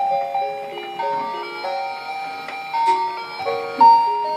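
Musical Santa Claus Christmas decoration playing a simple electronic tune, note by note in steady tones with a few sounding together.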